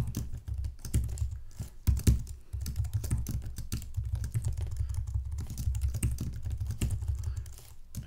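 Typing on a computer keyboard: a fast, irregular run of key clicks, with a few harder strokes about two seconds in.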